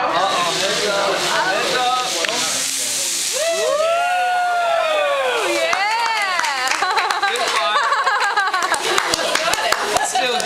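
Rum in a flambé pan of bananas catching fire with a hissing whoosh about two seconds in, then diners' long drawn-out exclamations and chatter as the flames rise. Rapid crackling near the end.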